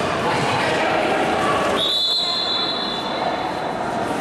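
A referee's whistle blown in one long steady blast, starting sharply a little before halfway and held for about two seconds, over the echoing noise of the indoor court.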